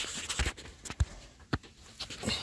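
Handling noise from a moving hand-held camera, with about three light knocks roughly half a second apart.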